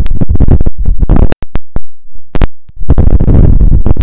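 Loud crackling, scratching noise on the microphone, broken by sharp clicks and brief sudden drop-outs around the middle.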